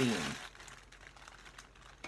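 A spoken word ends about half a second in, then faint, brief rustles of a parcel's packaging being handled.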